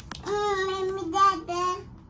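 A young child singing three short, held notes at a high, fairly even pitch, stopping just before the end.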